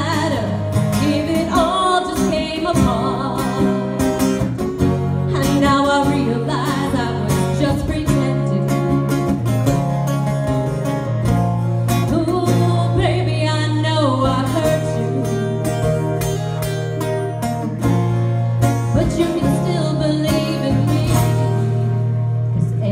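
A woman singing a slow ballad live into a microphone, backed by a clean electric guitar with sustained low notes underneath.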